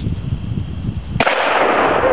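A single shot from a 12-gauge Remington 870 pump shotgun loaded with buckshot, a little over a second in. Its blast trails on as a noisy roar for about a second.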